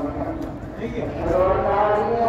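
A voice chanting in long, drawn-out melodic notes that slide slowly in pitch, fading a little about halfway through and swelling again near the end.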